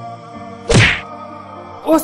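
Soft background music with a single loud thud about three-quarters of a second in, a sound effect for two people bumping into each other.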